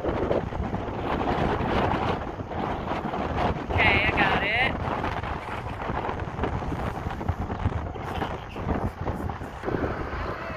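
Wind buffeting the phone's microphone in an uneven rumble throughout, with a brief high-pitched voice about four seconds in.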